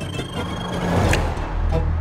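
Horror trailer score and sound design: a held high tone and a swelling noise rise to a sharp hit about a second in, then give way to a deep low drone.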